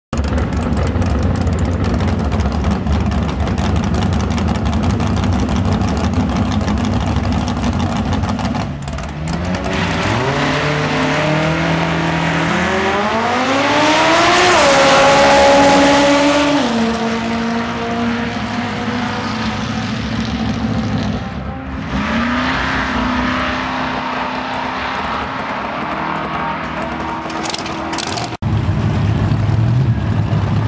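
Two drag-racing cars' engines running loud at the start line, then launching together at full throttle. The pitch climbs in steps as they shift up through the gears, is loudest as the cars pass the camera around halfway through, then drops and fades as they run down the track. Near the end the sound cuts abruptly to another loud engine at the start line.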